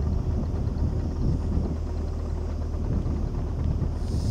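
A boat's engine running steadily, a low even drone.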